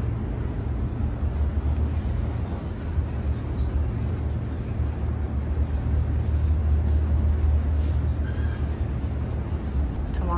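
Elevator car climbing its shaft: a steady, deep rumble that sets in suddenly and grows a little louder past the middle.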